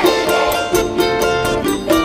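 Live band playing an instrumental passage: acoustic guitar and other plucked strings over percussion, with a quick steady beat of about four strokes a second.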